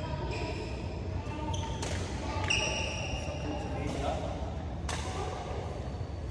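Badminton rally: sharp racket strikes on a shuttlecock about three seconds apart, with a short high shoe squeak on the court floor just after the first one, all echoing in a large sports hall.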